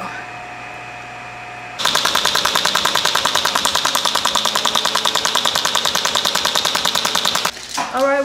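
Handheld body-contouring treatment applicator, set at level 100, firing a rapid even train of pulses at about eight a second. The train starts suddenly about two seconds in and stops suddenly near the end, over a faint steady hum.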